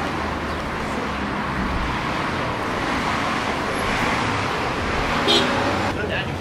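City street traffic: cars passing with a steady low rumble, one vehicle swelling past about four seconds in. A brief high pitched sound stands out near the end.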